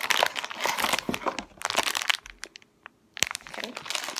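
Crinkling and rustling of candy packaging as a box of marshmallow candies is opened by hand, with a short lull about two and a half seconds in, a single sharp click, then more crinkling.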